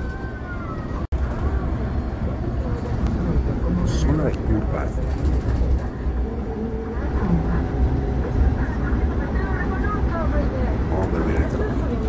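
Coach bus heard from inside its cabin while driving on the highway: a steady low engine and road rumble, with indistinct voices in the background. The sound cuts out for an instant about a second in.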